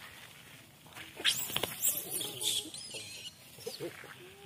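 Young long-tailed macaques squealing and chirping in high-pitched, sweeping calls. The calls start about a second in and go on for about two seconds.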